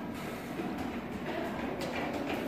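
Steady background room noise: a low rumble and hiss with a faint hum, and a soft click near the end.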